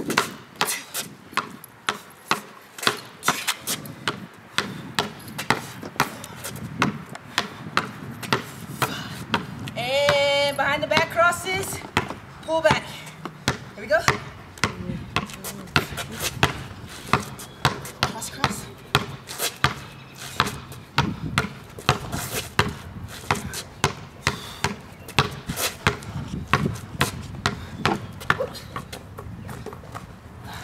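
A basketball dribbled hard and fast on a concrete driveway in quick crossover moves, about two to three sharp bounces a second without a break.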